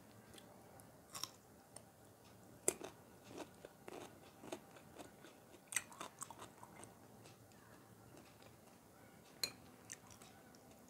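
Close-miked biting and chewing of a pickled gherkin: soft chewing broken by a few sharp, crisp crunches spread through the stretch.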